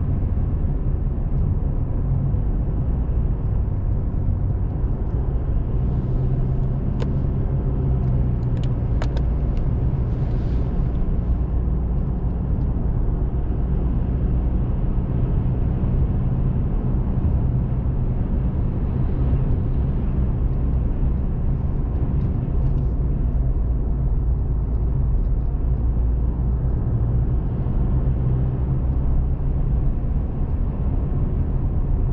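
Steady low rumble of a car driving at highway speed: tyre and engine noise heard from inside the cabin, with a few faint clicks about seven to nine seconds in.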